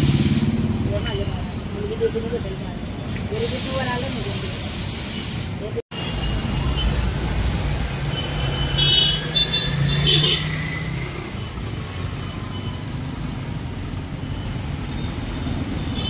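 Compressed air hissing through an air-hose chuck into a car tyre being inflated, with vehicle engines running in the background.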